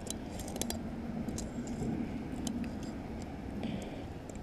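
Scattered small metallic clicks and ticks of pliers and a fishing hook being handled while a hook is worked out of a bullhead catfish, most of them in the first couple of seconds, over a faint low hum.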